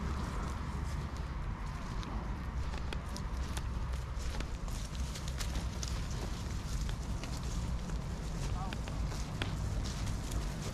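Footsteps of a person running across grass with wind buffeting the microphone: a steady low rumble broken by many small clicks and rustles.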